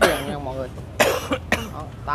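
A person's brief voice at the start, then a cough about a second in and a second, shorter burst half a second later.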